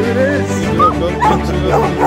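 Background music playing, with a dog whining and yipping over it in short calls that bend up and down in pitch.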